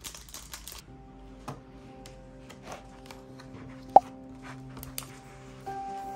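Plastic wrapper crinkling for under a second as a pen is unwrapped, then soft music with long held notes. A few sharp clicks sound over the music; the loudest comes about four seconds in.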